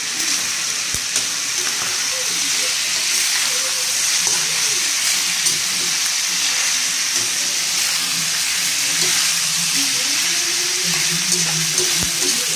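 Pork pieces sizzling steadily in hot oil in a pan as they are sautéed, with the scrape and clack of a spatula stirring them against the pan.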